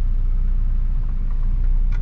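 Car engine idling steadily with a low rumble, heard from inside the cabin.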